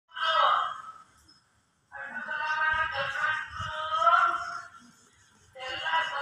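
A song with a high sung vocal, heard in three phrases separated by short pauses.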